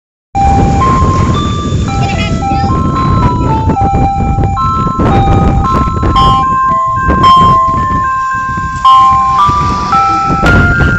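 An ice cream truck's loudspeaker playing a Christmas tune as a simple electronic chime melody, one clean note at a time, over a low rumble.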